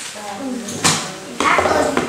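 Children talking indistinctly, with one sharp knock a little under a second in.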